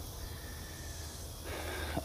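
Steady outdoor evening background: a high drone of insects over a low rumble, with a faint breath from the speaker near the end.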